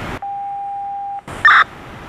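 Police radio alert tone: a single steady electronic beep held for about a second, then a short, loud chirp as the radio channel keys up again.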